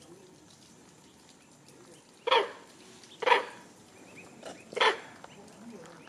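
A dog barks three times, short sharp barks about a second and then a second and a half apart.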